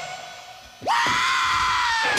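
The rock music drops away, then just under a second in a man lets out a long, loud scream that swoops up in pitch and holds one note.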